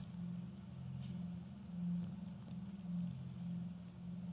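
A faint, low steady hum that swells softly a few times, with no other distinct sound.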